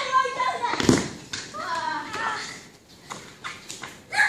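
Children shouting and calling out during a game of football, with one sharp thump of the ball being kicked about a second in.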